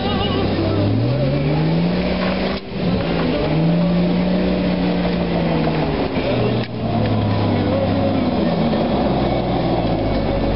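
Jeep engine under load on an off-road track, its revs climbing about a second in and held high. The engine note cuts out briefly twice, after which it runs lower.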